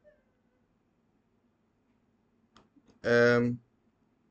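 A few faint clicks, then one short, steady, drawn-out vocal sound lasting about half a second, near the end.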